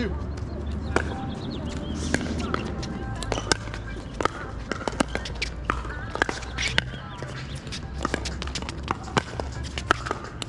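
Pickleball rally: paddles striking a plastic pickleball back and forth, sharp pops about once a second, with fainter pops from play on neighbouring courts between them. A steady low hum runs underneath.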